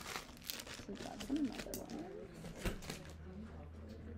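Clear plastic packaging bag crinkling in irregular bursts as a small lock is handled inside it, with a single sharp click about two-thirds of the way through.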